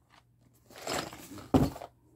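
A cardboard LEGO set box being handled: a brief rustling scrape, then a single thunk about a second and a half in.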